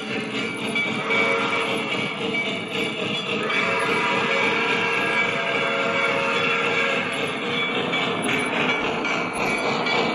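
Lionel Vision Niagara O-gauge model steam locomotive running at speed, its onboard sound system playing steam locomotive sounds with a steady whistle tone, over the rolling of metal wheels on the track, as it comes up and passes close near the end.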